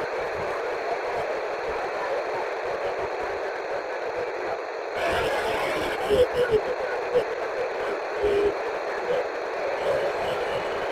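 The SO-50 amateur satellite's FM downlink heard through an Icom IC-2730A receiver: steady static hiss, with weak, garbled voices of many operators breaking through from about five seconds in on a heavily crowded pass.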